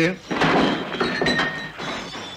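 Crash and thud of bar furnishings being smashed during a brawl, followed by a short steady high tone.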